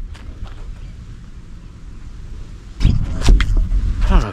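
A heavy boom like an explosion, which the listener takes for cannon being fired: a sudden loud rumble about three seconds in that lasts roughly a second.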